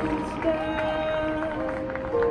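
Marching band playing a soft, slow passage: long held wind chords, with a new note entering about half a second in and light mallet-percussion strokes over them.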